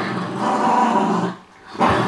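Pet dog growling off camera: one sustained growl lasting about a second and a half, then another starting near the end.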